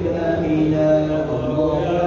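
A man's voice chanting a recited text in long, held notes that slide from one pitch to the next, amplified through a microphone and loudspeakers.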